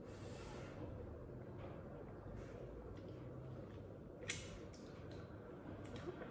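Faint chewing of a soft, sticky homemade frozen Nutella chocolate, with a small click a little over four seconds in.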